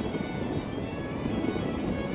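Background music with steady held tones, over a constant hum of motorcycle and wind noise.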